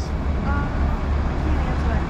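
Steady low rumble of city street traffic, with a faint voice briefly about half a second in.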